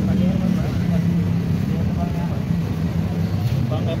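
Street traffic: a steady low engine hum from vehicles on the road, with voices talking in the background.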